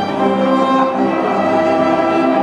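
Small string ensemble of violins and cello playing together, with long held bowed notes that move from chord to chord.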